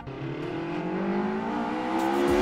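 An engine revving sound for a toy tow truck, its pitch climbing slowly and steadily.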